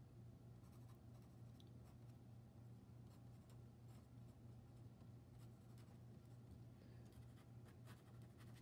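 Faint scratching of an ink pen on watercolour paper as lines are drawn, over a steady low hum.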